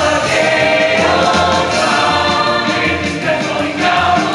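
Show choir singing a song together over instrumental accompaniment with a steady bass line.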